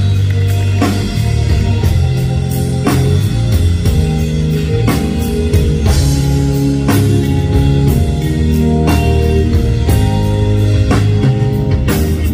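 Live rock band playing an instrumental passage: electric guitars and bass, keyboards and a drum kit with a strong hit about once a second. No vocals yet.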